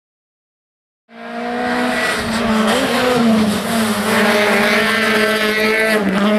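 Rally car engine revving up and down as the car is driven at speed, its pitch rising and falling with the throttle and gear changes. The sound starts about a second in.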